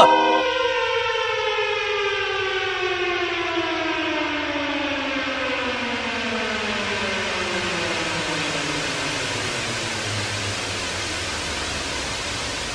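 Long electronic siren-like tone with several overtones, falling slowly and steadily in pitch, with a hiss swelling beneath it. It is a musical break in an electronic hip-hop track.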